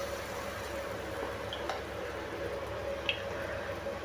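Spoonfuls of batter being poured into the hot oiled wells of a kuzhi paniyaram pan, a steady low hiss of sizzling with a couple of faint ticks.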